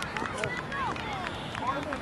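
Distant shouting voices of players and spectators calling out across an outdoor soccer field, quieter than the nearby sideline voice heard just before and after.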